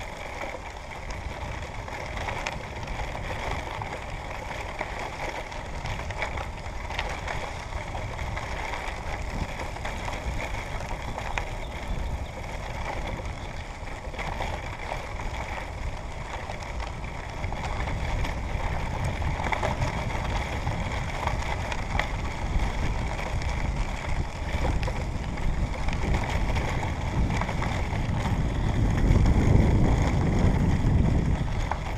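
Wind buffeting the microphone of a camera moving along a country road: a steady low rumble that grows louder over the second half and is loudest near the end.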